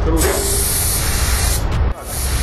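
Sagola Mini Xtreme mini spray gun (1.4 mm nozzle, Aqua air cap) spraying a test pattern onto masking paper: one steady hiss of compressed air and atomised paint lasting about a second and a half, then cut off as the trigger is released.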